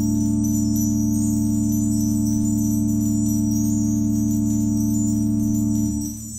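Three-manual church organ holding one sustained chord, which is released near the end and dies away in the room's reverberation.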